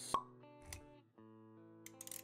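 Intro music with sustained plucked-string notes, with a sharp pop sound effect right at the start and a softer low thump just under a second in, timed to the animated shapes popping onto the screen.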